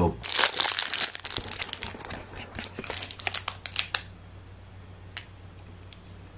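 Snack packaging crinkling and crackling as it is handled, stopping about four seconds in.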